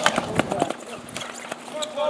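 Ball hockey sticks clacking against each other and the ball on the court, a quick run of sharp knocks that thins out after about half a second.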